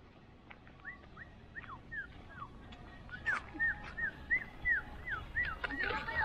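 An animal calling: a run of short, high, whistled chirps, two to three a second, starting about a second in and growing louder from about three seconds in.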